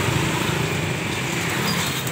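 A motorbike engine running steadily, an even low engine note with no clear rise or fall.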